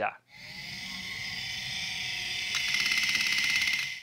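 Electronic logo sting: a bright, buzzing synthetic tone swells for about two seconds, then a hit about two and a half seconds in turns it louder and rapidly fluttering, and it cuts off abruptly.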